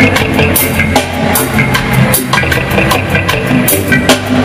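Live reggae band playing an instrumental stretch between vocal lines, led by drum kit with a steady bass line underneath.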